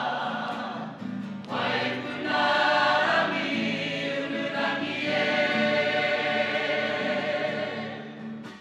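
A group of singers singing a Māori waiata together in long, held phrases.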